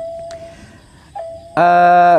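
A man's voice in a pause of a told story: a faint thin steady tone at first, then about one and a half seconds in a loud, long drawn-out sung syllable at a steady pitch, in the sing-song manner of Khmer storytelling.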